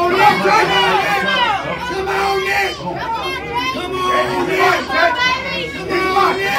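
Crowd of spectators around an arm wrestling table, many voices talking and calling out over one another.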